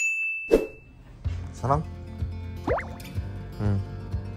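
A bright ding sound effect rings for about a second at the start, then background music with a steady low beat and sliding, voice-like tones.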